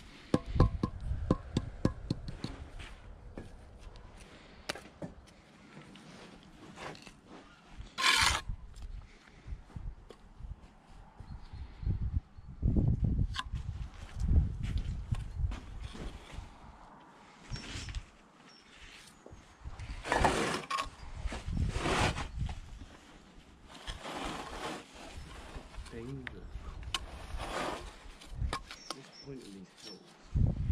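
Steel brick trowel at work on a brick-on-edge course: a quick run of taps in the first few seconds as bricks are settled into the mortar, then scattered scrapes of the blade spreading and cutting mortar along the wall top.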